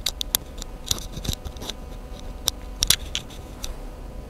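Irregular sharp, high clicks, two or three a second, from a barber handling a razor in his hands.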